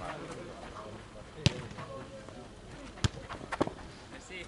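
A football struck during a footnet rally, with sharp thuds from kicks and bounces on the hard court: one about a second and a half in, one at about three seconds, and a quick pair just after, over faint distant voices.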